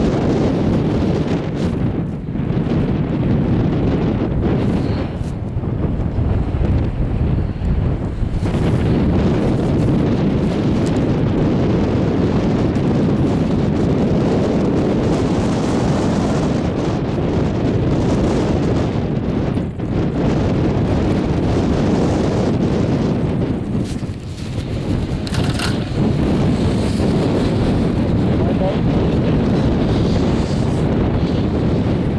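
Wind buffeting the camera's microphone on a moving open chairlift: a loud, steady low rush that dips briefly a few times.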